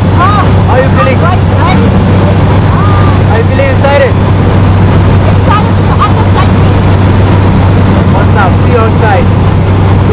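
Loud, steady cabin noise of the Atlas Angel jump plane in flight: the engines drone low and constant, with rushing air over them.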